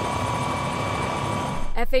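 Steady engine noise with a faint constant whine, from heavy machinery at the scene where a crashed semi-truck is being recovered. It stops shortly before the end.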